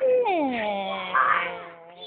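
A long, drawn-out vocal cry from a person that slides down in pitch over about a second and then holds low and steady until it stops.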